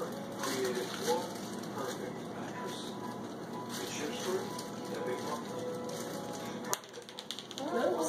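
Soft, indistinct voices with faint background music. About seven seconds in there is a sharp click followed by a short run of quick clicks.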